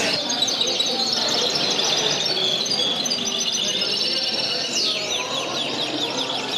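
Many caged canaries singing at once: overlapping rapid trills and chirps, with a quick falling whistle just before the end.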